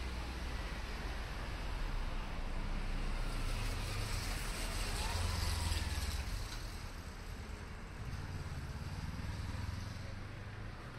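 Street traffic: a steady low rumble of road vehicles, with one passing close that swells through the middle and fades away.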